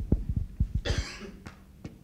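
A man coughing once into a handheld microphone about a second in, after several soft, low thumps.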